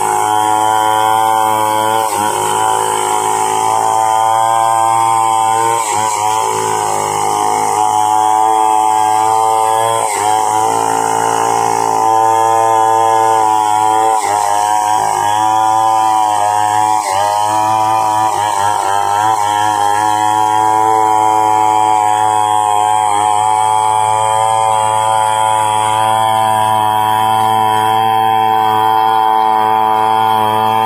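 Two-stroke chainsaw running at high revs while ripping a timber lengthwise. Its pitch dips briefly several times as the chain bites in the cut, then recovers.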